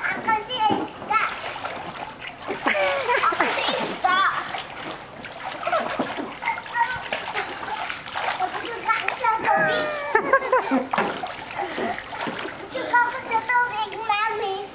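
Children splashing in a shallow inflatable paddling pool, with high children's voices calling out throughout.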